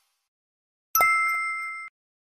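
A single bright chime-like ding from a logo animation's sound effect, struck about a second in, ringing with a few clear steady tones as it fades, then cutting off abruptly.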